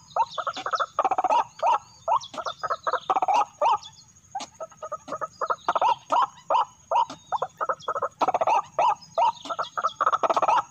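White-breasted waterhen calling: a fast, rhythmic series of harsh croaking notes, several a second, with a short break about four seconds in. A steady thin high tone runs underneath.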